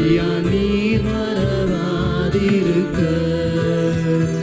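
Male vocalist singing a slow Tamil Christian worship song, the melody gliding and held over sustained keyboard chords with band backing.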